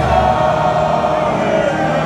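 A huge stadium crowd singing together, many thousands of voices holding and sliding through a slow tune in a loud, steady wash.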